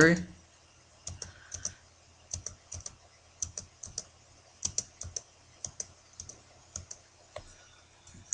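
Irregular sharp clicks from a computer keyboard and mouse, starting about a second in and coming two or three a second.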